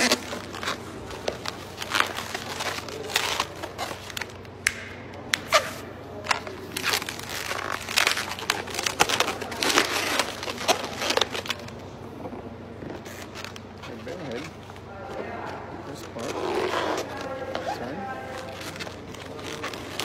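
Latex twisting balloons squeaking and rubbing against each other as they are twisted and locked by hand, in a run of short sharp squeaks and rubs, with a few longer pitched squeals near the end.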